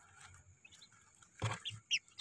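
Newly hatched Muscovy ducklings peeping faintly: a few short, high peeps, the loudest just before the end.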